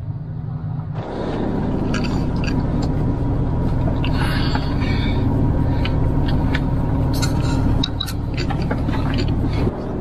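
Inside the cabin of a moving Mitsubishi Pajero: engine and road noise as the SUV drives on through an intersection. The rushing noise grows louder and steadier about a second in, with a few light clicks and knocks over it.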